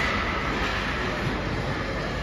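Steady, even rushing noise of an ice rink during play.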